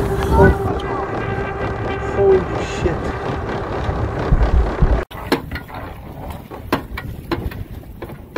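Wind and water rushing past a fast-moving rigid inflatable boat, with a steady high tone running over it. About five seconds in the sound drops suddenly to quieter wind with scattered knocks and clicks, as the boat sits with its Mercury Verado outboard failed.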